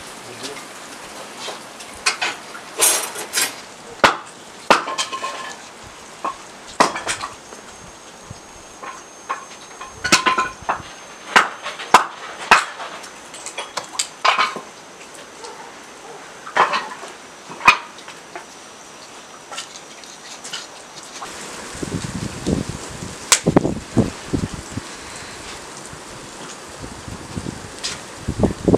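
Scattered sharp knocks and clatters. In the last several seconds they give way to a denser run of duller thuds as split firewood is loaded into a metal charcoal grill (mangal).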